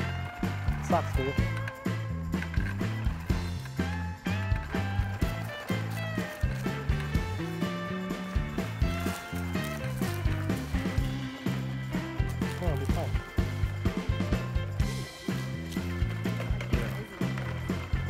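Background music with a steady beat over a stepping bass line.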